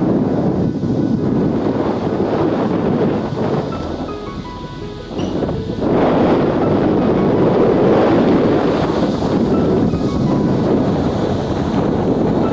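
Wind buffeting the microphone of a moving vehicle, a loud, steady rush that eases for a couple of seconds around the middle. Faint music with a few clear notes runs underneath.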